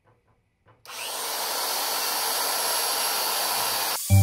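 Makita portable band saw starting up a little under a second in after a few faint clicks, then running steadily as it cuts through a metal frame tube.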